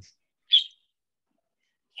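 Dead silence from a video call's noise gate, broken once about half a second in by a short, high chirp.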